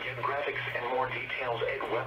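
Speech from a NOAA Weather Radio broadcast playing through a speaker, over a steady low hum.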